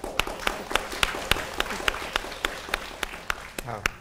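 Hands clapping in a steady rhythm, about three or four claps a second, amid laughter.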